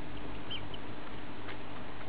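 Two faint, short squeaks from rats about half a second in, as a litter of three-week-old pups suckles from their mother, with a couple of soft clicks later. A steady background hiss and low hum run underneath.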